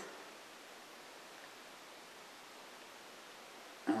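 Quiet room tone: a faint, steady hiss with no distinct sound.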